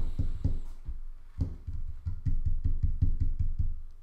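A man's stifled, closed-mouth laughter: quick low chuckles, about six a second, breaking off briefly about a second in and then starting again.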